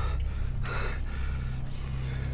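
A man gasping in distress: two sharp breaths, the louder about two-thirds of a second in, over a low steady drone.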